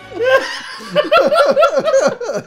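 A man laughing hard, a quick run of ha-ha pulses that gets louder about a second in.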